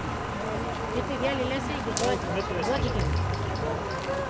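Faint, overlapping chatter of several people talking in the background, with a single sharp click about two seconds in and a low hum near the end.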